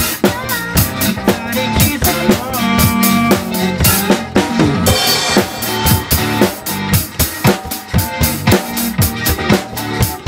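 Acoustic drum kit played with sticks in a steady beat, with kick, snare and tom hits over a recorded pop/dance backing track. A brief hissing wash comes about halfway through.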